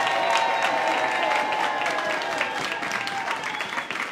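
Crowd applauding, with voices cheering over the clapping, easing off slightly near the end.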